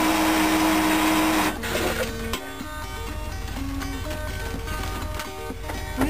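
Water pouring into a camper coffee maker for about four cups, a steady hiss that stops about a second and a half in. Background music with held notes carries on after.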